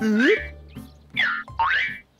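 Cartoon springy 'boing' sound effects for a frog character's hops: two springy pitch glides about a second apart, the first with a short grunt 'uh'. Light children's background music runs beneath.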